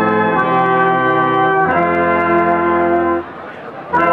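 Brass band playing held chords that move to a new chord about every second or so. The music breaks off briefly near the end and comes back with a new phrase just before the end.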